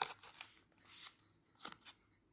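Felt pad on the underside of a metal lamp base being peeled away by fingers: about five short, faint scratchy rustles of the felt tearing from the base.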